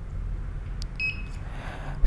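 A faint click, then a short, high electronic beep about a second in, as the RFID tag is read by the reader.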